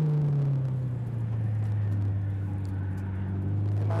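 Nissan S13 Silvia drift car's engine running under steady throttle, heard from trackside as a low, even drone; its pitch drops slightly about half a second in and then holds level.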